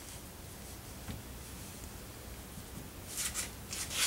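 Quiet workshop room tone with a faint steady low hum and a few light clicks; the lathe is stopped. A short hiss comes near the end.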